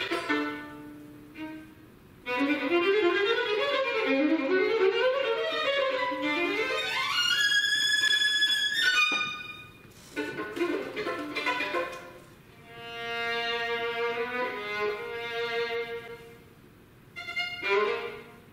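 Unaccompanied solo violin: fast rising and falling runs that climb to a high held note, then, after a short pause, slower sustained phrases.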